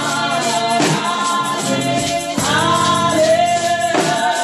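A woman singing a gospel worship song into a microphone over held keyboard chords, with a tambourine shaken in time to a steady beat.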